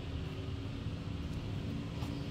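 Low steady rumble of a distant engine, with a faint steady hum that joins just after the start.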